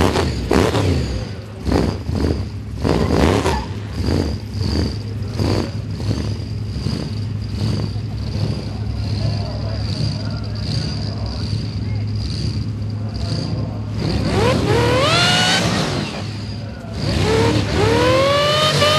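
Supercharged 406 cubic inch Chevrolet V8 in a Commodore burnout car, idling with short throttle blips in the first few seconds. It is then revved hard twice near the end, the pitch climbing each time, as the car starts its burnout.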